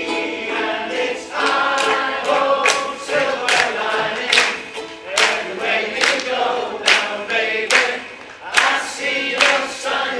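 Ukulele group singing together in unison over their strummed ukuleles, with a sharp accent on the beat a little more than once a second.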